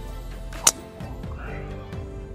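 A golf driver striking a teed ball: one sharp, short crack about two-thirds of a second in, over background music.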